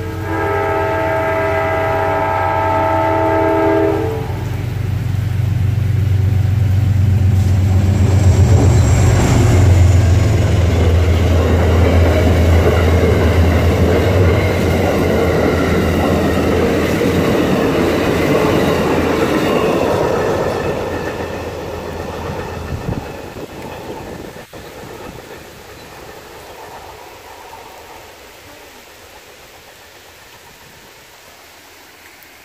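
Amtrak passenger train led by a GE P32AC-DM diesel locomotive going by: the horn sounds a chord that ends about four seconds in. The engine drone and the rumble of the cars rolling past then build to their loudest a few seconds later and fade away over the last third as the train moves off.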